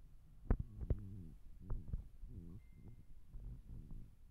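Soft knocks and clicks from handling, a hand working among wet worms in a ceramic dish, the two loudest about half a second and a second in, over a low hum.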